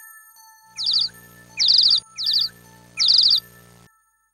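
Bird chirping sound effect on an animated logo: four short bursts of quick downward-sweeping tweets, with a low hum beneath them, over faint sustained chime tones.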